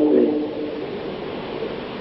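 A man's voice trailing off, then a steady hiss with no other sound.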